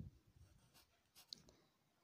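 Near silence, with a few faint, brief scratches and one soft tick from a pencil writing a letter into a box on a workbook page.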